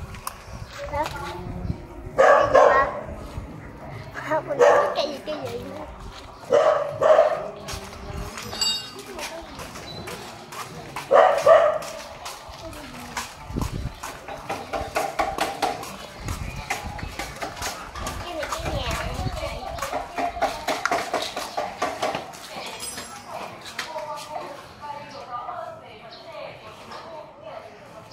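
A dog barking: four loud, short barks spaced a few seconds apart in the first half, then quieter, more continuous sound.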